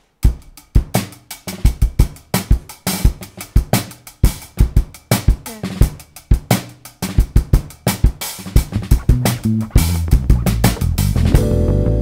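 Live band starting a song: a drum kit beat of kick and snare comes in abruptly just after the start, with bass guitar and guitar. About ten seconds in the low end fills out, and held chords join near the end.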